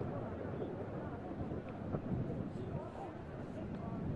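Outdoor rugby field ambience: distant voices of players and onlookers calling out, over a steady low rumble of wind on the microphone, with one short knock about two seconds in.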